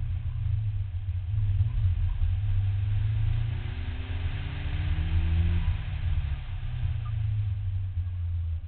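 Nissan Silvia S13's engine heard from inside the cabin, a deep rumble mixed with road noise. About three and a half seconds in, the revs climb steadily for about two seconds under acceleration, then drop off.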